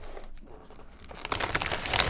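Crinkling of a plastic Ruffles potato chip bag as a hand rummages inside it for a chip, quiet at first and getting louder in the second half.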